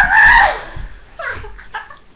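A girl's loud, high-pitched shriek that cuts off about half a second in, followed by short bursts of giggling.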